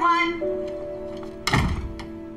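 An interior door shutting with a single thunk about one and a half seconds in, over sustained background film music.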